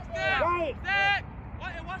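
Voices shouting: two loud, drawn-out yells in the first second or so, then a shorter call.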